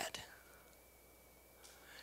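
Near silence: room tone in a pause between spoken sentences, with a faint steady high-pitched whine.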